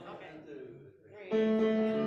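Hymn accompaniment on an instrument, probably guitar. After a quieter first second with a faint voice, a loud, sustained chord comes in suddenly about a second and a half in and holds.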